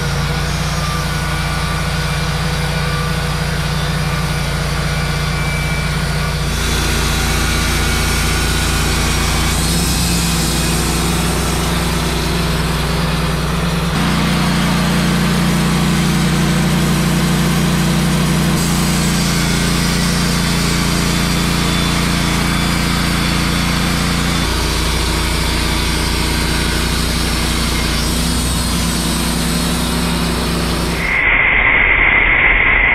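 Wood-Mizer LT15 portable bandsaw mill running on its gasoline engine while the band blade saws a pine cant into boards. The steady engine note steps up and down several times as the load on the blade changes.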